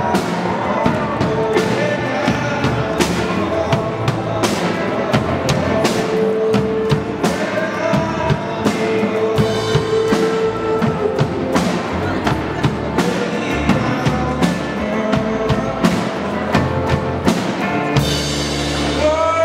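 Live rock band playing: electric guitars over a drum kit keeping a steady beat, with long held melodic notes.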